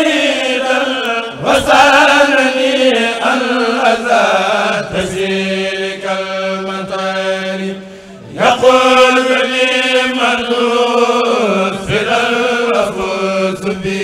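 Chanting of an Arabic religious poem in long, drawn-out, wavering notes, with a short break for breath about eight seconds in.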